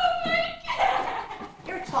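A high, drawn-out wailing cry from a person's voice, held for about half a second, then breaking into further cries and voice sounds.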